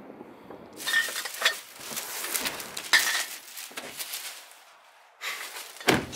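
Fireworks crackling in a dense sputter: a long spell from about a second in, then a shorter one near the end that cuts off abruptly.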